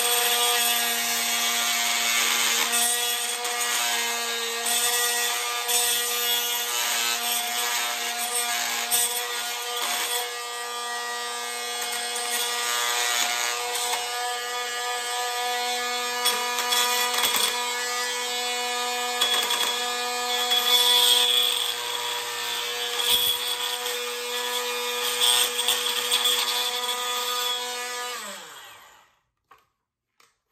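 Corded oscillating multi-tool running at a steady pitch, its blade grinding into the plastic housing of a Wildgame trail camera to widen a cable slot, the grinding louder at moments. Near the end the tool is switched off and winds down, its pitch falling.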